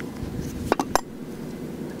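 Three quick, sharp plastic-and-metal clicks close together: a marker pen being handled and set down in a stainless cup holder. A low, steady background hum runs underneath.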